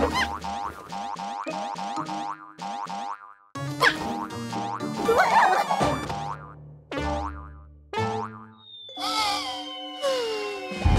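Playful cartoon music of quick plucked notes, with springy boing sound effects for a bouncing blob: a fast rising sweep about four seconds in, and a long falling whistle-like glide near the end.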